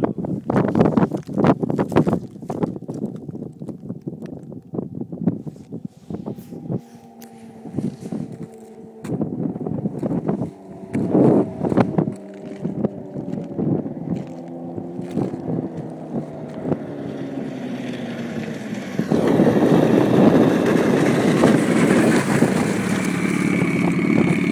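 A snowmobile engine some way off, its note falling slowly and steadily in pitch as the sled slows down, with wind buffeting the microphone. About three quarters of the way through, a louder steady rushing noise sets in.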